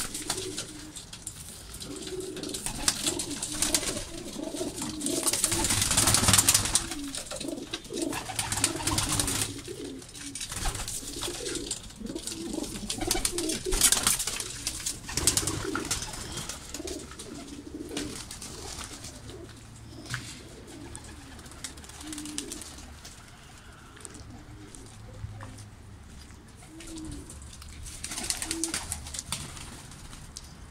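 Domestic pigeons cooing continuously, with several louder rushing bursts of noise. The loudest bursts come about six and fourteen seconds in.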